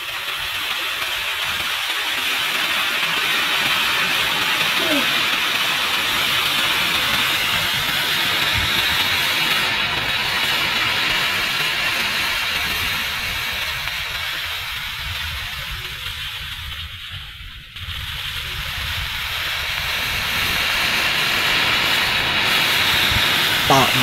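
Potassium nitrate and sugar mixture burning with a steady hiss, fading somewhat past the middle and then picking up again suddenly about eighteen seconds in.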